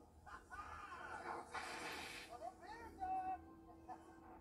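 Ride-film soundtrack playing from a TV speaker: indistinct voices and effects, with a brief loud rushing hiss about one and a half seconds in and a steady low tone in the second half.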